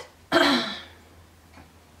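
A woman clearing her throat once, a short burst about a third of a second in.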